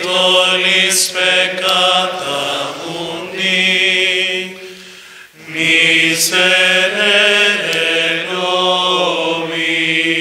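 A voice singing a slow liturgical chant in long held notes, in two phrases with a short break about five seconds in. It is sung at the sign of peace and fraction rite of the Mass.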